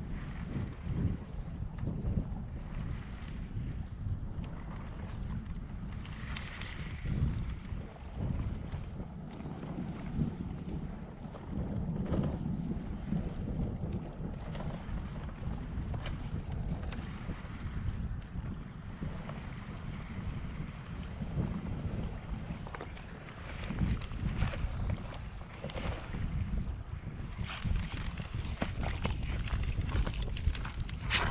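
Wind buffeting the microphone: a low rumble that swells and dips in gusts, with a few brief knocks or rustles near the end.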